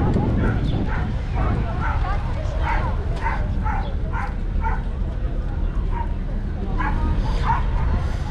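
A dog barking repeatedly in short, sharp yips, about two a second for several seconds, with a few more barks near the end, over a busy background of voices and low rumble.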